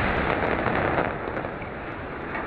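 Titanium-infused gunpowder set alight by a high-power laser, burning with a dense crackling fizz of sparks like a big sparkler, slowly easing toward the end.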